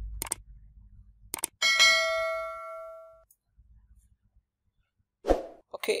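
Subscribe-button animation sound effect: two mouse clicks, then a bright bell-like ding that rings and fades out over about a second and a half.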